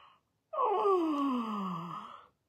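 A woman yawning aloud: one long yawn starting about half a second in, her voice sliding steadily down in pitch from high to low.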